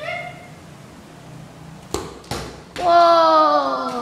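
A football kicked on a tiled floor: two sharp knocks about two seconds in, a third of a second apart. Then a child's long yell, slowly falling in pitch, the loudest sound.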